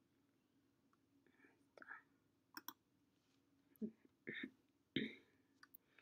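Faint whispered speech: a person muttering under their breath in short bits, with a few short sharp clicks among them, over a faint steady low hum.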